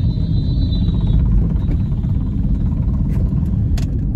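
Steady low road and engine rumble inside a moving car's cabin. A faint high whine fades out about a second in, and there is a single click near the end.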